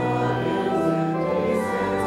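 Hymn singing with organ accompaniment, in held chords that change about every second.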